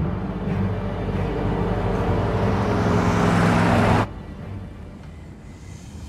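A car drawing nearer, its engine and road noise swelling in loudness over sustained low music. The noise cuts off abruptly about four seconds in, leaving a much quieter low rumble.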